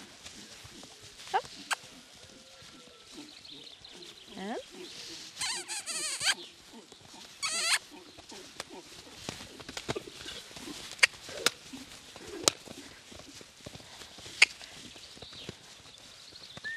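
A farm animal calls twice about five seconds in: a long, high, wavering call, then a shorter one. A few sharp clicks follow later.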